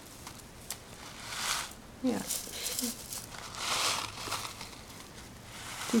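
A foil tea bag crinkling and dry Longjing green tea leaves rustling as they are poured from the bag into a tin, in three soft crackly bursts.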